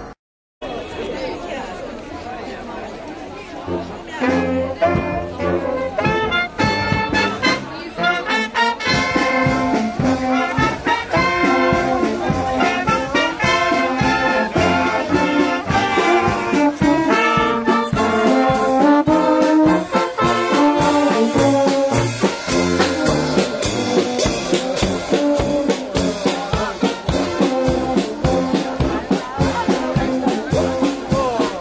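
A brass band with saxophones and clarinets playing a tune, with crowd chatter underneath. The band comes in about four seconds in, after a short silence and a stretch of quieter crowd noise.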